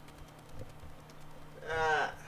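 A person's short wordless vocal sound near the end, a brief pitched hum or exclamation, after faint clicks and handling noise.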